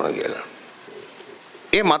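A man giving a speech: one phrase trails off, then comes a pause of about a second with only faint low sounds, and the next phrase starts sharply near the end.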